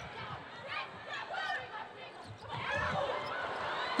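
Volleyball rally in an arena: crowd noise and players' calls, with thuds of the ball being dug and played.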